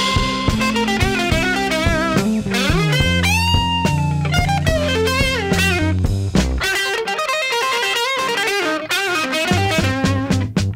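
Electric blues guitar playing the lead of a song's instrumental intro. Notes are bent up and held with vibrato, over bass and drums.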